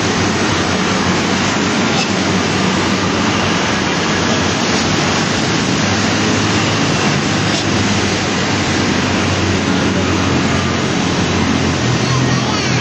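Steady, loud rushing noise with no distinct footsteps, strikes or other separate sounds standing out.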